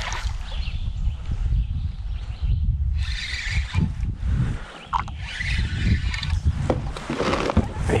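A hooked bass splashing at the surface as it is reeled in toward a kayak, over a steady low rumble on the microphone, with a few sharp clicks in the second half.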